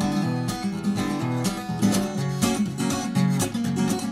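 Acoustic guitar strummed in a steady rhythm of chords.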